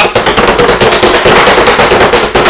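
Pizza dough being patted and slapped flat by hand on a floured wooden peel: a rapid, loud run of pats at about seven a second.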